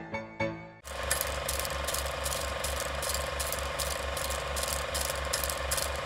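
A short piano phrase ends about a second in, then a film projector sound effect takes over: a steady mechanical clatter repeating about four times a second.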